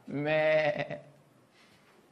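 One drawn-out goat bleat, just under a second long.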